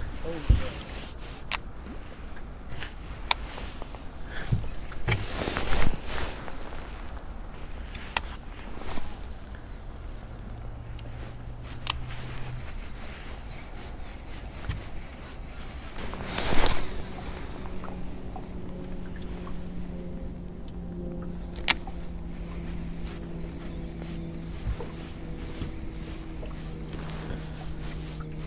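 Rod, reel and boat handling noise while a lure is cast and retrieved from a small boat: scattered knocks and clicks, a loud rush about halfway through, then a steady low hum that runs on to the end.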